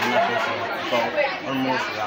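Speech only: a boy talking.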